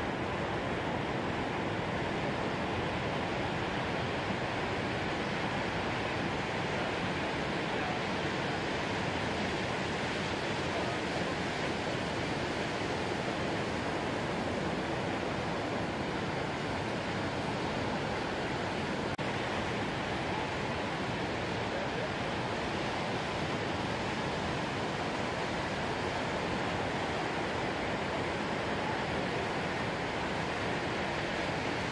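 Big ocean surf breaking, heard as a steady, even wash of noise with no single crash standing out.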